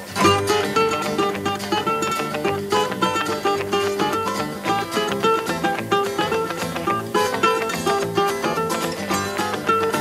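Small acoustic guitar-type string instrument picked in a fast, lively melody, coming in sharply on the downbeat of a count-in, with a steady low bass under it.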